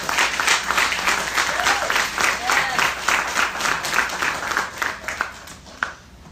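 Congregation applauding, with a few voices calling out, the clapping dying away near the end.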